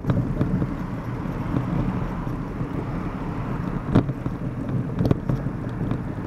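Steady low rumble of queued, slow-moving road traffic, with wind on the microphone. Two sharp knocks about four and five seconds in.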